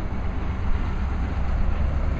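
Steady low rumble of outdoor background noise, with no voice over it.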